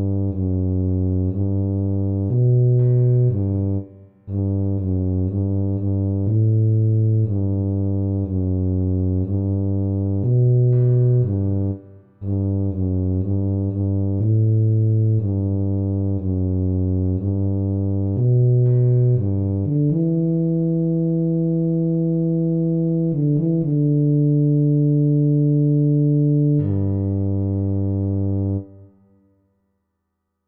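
Tuba playing a single bass line, one note at a time. First comes a steady run of short, evenly spaced notes, then a few longer held notes, and it stops on a rest just before the end.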